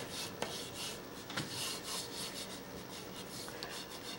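Water-soluble oil pastel scraping across paper in short, repeated back-and-forth strokes as an area is coloured in with lines.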